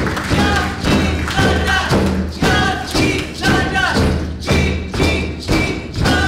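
Haida raven song: a drum beaten steadily about twice a second under group singing.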